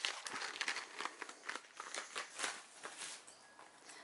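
A bundle of pencils being slid back into a printed paper sleeve: quiet rustling with many small clicks and taps, thinning out near the end.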